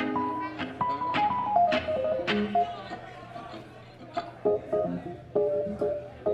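Electric guitar played loosely, single plucked notes and short phrases with no steady beat, quieter in the middle and picking up with sharper plucks in the second half.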